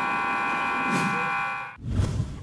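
Gym scoreboard buzzer sounding as the game clock hits zero, the end-of-period signal: one steady, harsh blare that cuts off suddenly near the end. A brief low thump follows right after it.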